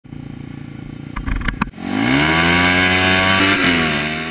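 Motorcycle engine idling with a lumpy beat, a couple of sharp clicks about a second and a half in, then revving up quickly and holding a high steady note that dips slightly near the end.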